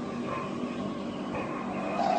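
Stair lift's electric motor running steadily as the carriage climbs its rail, a constant mechanical hum with a few steady tones.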